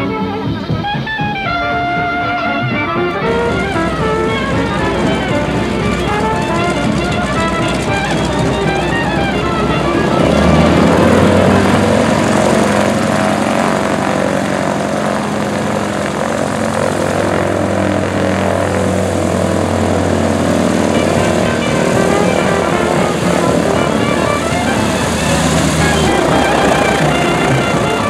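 Radial engine of a taxiing Vultee BT-13 Valiant trainer running at low power with propeller noise, growing louder about ten seconds in as it comes close. Background music plays alongside, clearest in the first few seconds.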